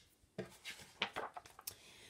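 Pages of a picture book being turned by hand: faint paper rustling with a few light clicks as the book is handled.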